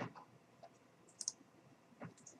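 A few faint computer mouse clicks: a sharp one at the start, a couple of softer ones just after, and a quick high double tick a little past a second in.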